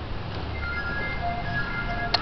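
A simple electronic jingle of clear single notes starts about half a second in, over a low steady rumble.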